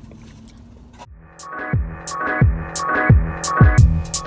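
Background electronic music with a beat starting about a second in: deep kick drums falling in pitch, crisp hi-hat ticks and sustained synth chords. A quiet, steady low hum comes before it.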